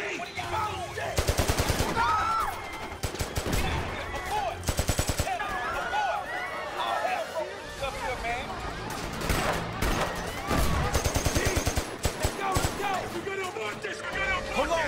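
Several bursts of rapid automatic gunfire spread through the stretch, each a quick string of shots. Between the bursts there is shouting from frightened people.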